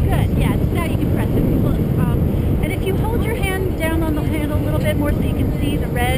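Wind buffeting an open-air camera microphone, a steady low rumble, with faint voices talking underneath.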